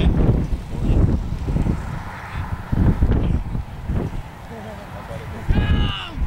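Wind buffeting the microphone in uneven low rumbles, with indistinct voices in the background and one loud shout near the end.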